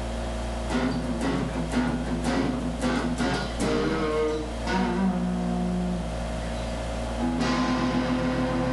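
Electric guitar played through a practice amp with a clean tone, without a distortion pedal: a run of picked notes and strummed chords, with a couple of held notes in the middle and a steady low hum underneath.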